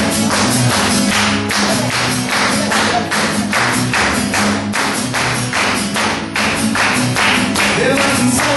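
Acoustic guitar strummed in a steady, quick rhythm, each strum a sharp stroke over ringing chords.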